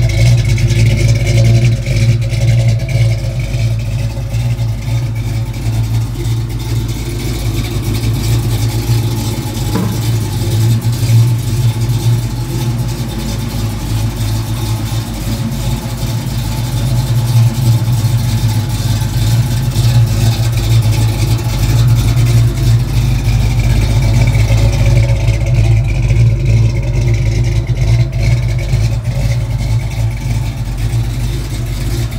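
The 351 Windsor V8 in a 1968 Ford Falcon Sports Coupe idling steadily, with a deep, continuous low rumble.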